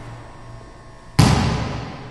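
Sound effects of an animated logo sting: a fading low tone, then a sudden loud impact hit just over a second in that slowly dies away.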